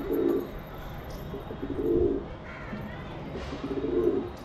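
Domestic pigeons cooing: three low coos about two seconds apart.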